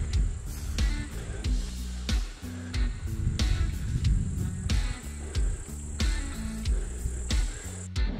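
Background music with a steady drum beat and a stepping bass line.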